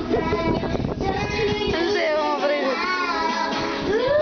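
A child singing a sliding, melodic tune, with music.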